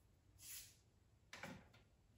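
Near silence with faint handling noise: a soft rustle about half a second in and a light tap at about a second and a half, as small decorative wheat sprigs are set on a cabinet shelf.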